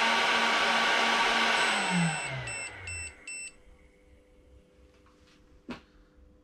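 A pop song playing in the background fades out over the first three seconds. As it fades, a high electronic tone is followed by four short beeps, about three a second, signalling that the lipo battery discharge has completed.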